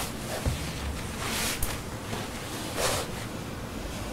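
Quiet pause with low room noise and two soft hissing sounds, about a second and a half apart.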